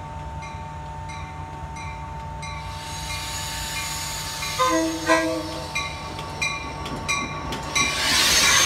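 Metra bilevel commuter train approaching with its cab car leading: a bell dinging steadily, a short horn blast about five seconds in, and the train's rumble growing louder until the cars are passing close by at the end.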